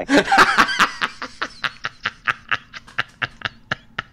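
Laughter: a loud burst that trails off into short, breathy laughs, about four a second, fading out near the end.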